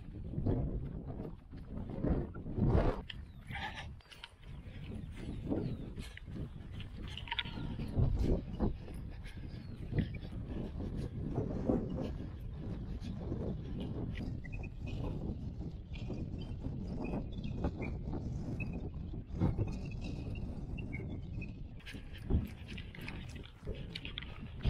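Wind buffeting the microphone in a steady low rumble, with a runner's footfalls on grass and his breathing as he runs downhill.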